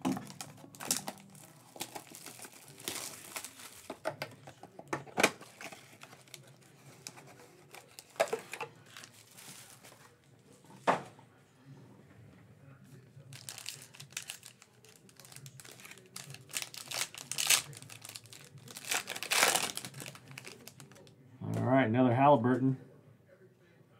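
Trading-card packaging being opened by hand: a cardboard hobby box and a foil card pack crinkling and tearing in short bursts, with a few sharp clicks. The crinkling is thickest late on, as the foil pack is ripped open.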